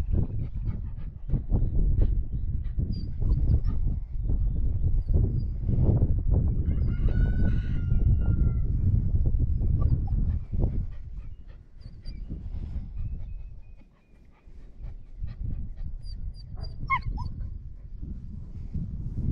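Wind buffeting the microphone in gusts, easing off briefly about two-thirds of the way in. A German shepherd puppy gives a high, drawn-out whimper about seven seconds in, and a short rising whine comes near the end.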